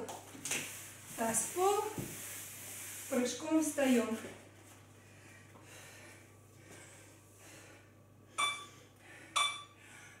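A woman's voice comes twice in the first four seconds. Near the end, an interval workout timer gives two short electronic beeps a second apart, counting down the end of the rest period.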